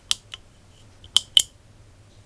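Small PCB relays on a 4-channel Wi-Fi relay module clicking as they switch over. There are four sharp clicks: a lighter pair in the first half second and a louder pair a little after one second.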